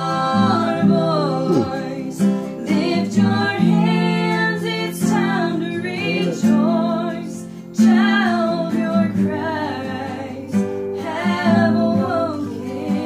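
Three women singing a hymn together to an acoustic guitar accompaniment.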